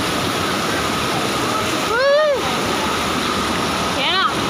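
Floodwater rushing steadily, with one short high-pitched call that rises then falls about two seconds in.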